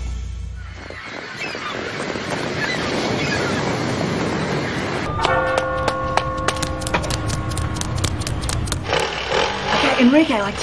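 Street traffic noise, an even rushing background, after a track of music fades out in the first second. About five seconds in, several steady held tones with a quick run of clicks sound over it for a few seconds.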